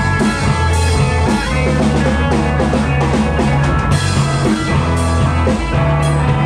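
Rock band playing live in a small rehearsal room: electric guitars, bass guitar and a drum kit, loud and steady without a break.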